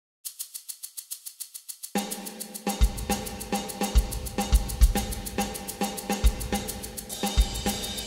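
Sampled drum kit finger-played on a mini MIDI keyboard: a fast hi-hat pattern of about eight ticks a second alone at first, then snare and kick drum join about two seconds in, locking into a busy repeating groove.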